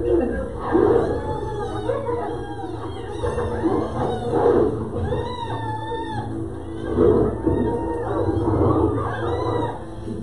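A pack of hyenas mobbing a lion, many overlapping whooping and giggling cries that rise and fall in pitch, over documentary music.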